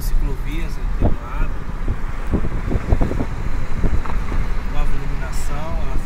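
Road and engine noise heard from inside a moving car: a steady low rumble, with a few short low knocks about one to four seconds in.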